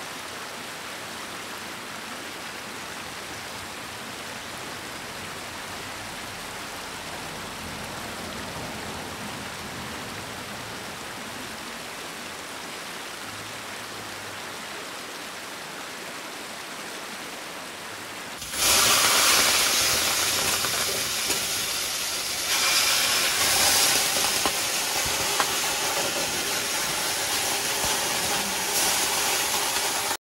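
Mountain stream flowing steadily. About two-thirds of the way through, a much louder, hissing rush of noise cuts in suddenly and holds to the end.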